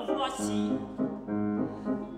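Grand piano playing a short accompaniment passage alone, a few chords struck and left to fade, between phrases of a classical song.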